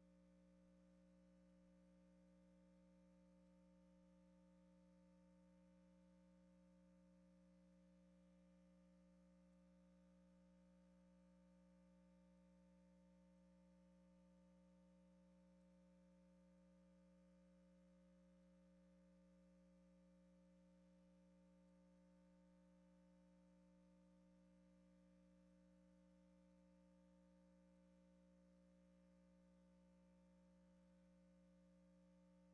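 Near silence: only a faint, steady hum of a few fixed tones, unchanging throughout.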